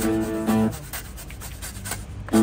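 Acoustic guitar street music: a held chord stops about two-thirds of a second in, leaving quieter scratchy, muted strumming on the strings before the playing picks up again.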